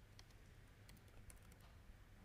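Faint laptop keyboard typing: a handful of scattered key clicks over a low steady hum.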